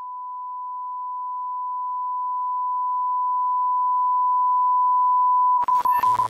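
A steady, pure electronic beep tone at one pitch, growing steadily louder, then breaking off abruptly near the end into a few clicks and crackle.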